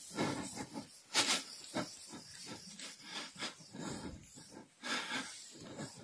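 Marker pen squeaking and scratching on a whiteboard as someone writes, in a run of short, irregular strokes.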